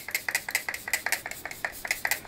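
Makeup setting spray bottle pumped rapidly over the face, each pump a short hiss of mist, about six or seven sprays a second.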